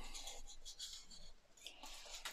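Faint scratching and rubbing of a small screwdriver working an LED's wire lead into a recess in a plastic model part, a light scratchy stretch through the first second and another brief one near the end.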